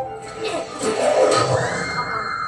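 Anime soundtrack: music under a rising rush of noise that ends in a low hit a little past a second in, followed by a steady high tone.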